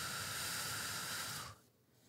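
A long, steady exhale into a close microphone, the drawn-out out-breath of a physiological sigh. It ends about one and a half seconds in.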